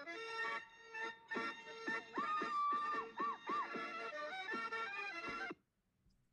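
Traditional Łowicz-region folk dance music from an old 1967 film recording, played back through an online lecture's audio. The music stops abruptly shortly before the end.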